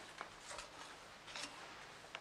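Quiet room with faint rustles and a few soft clicks of a person moving about and handling things.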